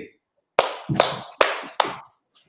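A single person clapping hands four times, a little over two claps a second, after a short pause.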